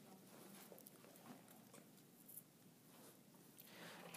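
Near silence: faint room hiss with a few soft taps and scratches of a stylus writing on an iPad screen.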